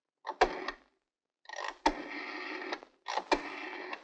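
Rotary dial telephone being dialled: three digits, each starting with a click as the dial is let go, followed by the whirr of the dial running back. The second return, about a second and a half in, is the longest.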